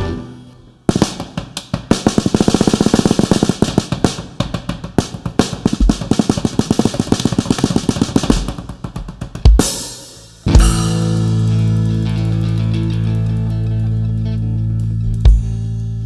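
Tama drum kit played alone, a fast run of snare and tom strokes and rolls lasting about nine seconds. About ten and a half seconds in, the band comes in together on a held chord: acoustic guitars, bass guitar and cymbals ringing out and slowly fading, with one more accented hit near the end.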